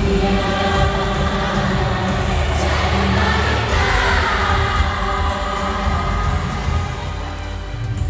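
Music with singing voices over a strong, continuous bass.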